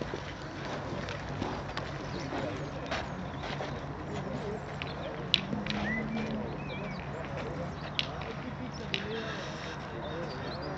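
Distant murmur of voices, with a few sharp clicks of metal boules knocking together, the loudest about five seconds in.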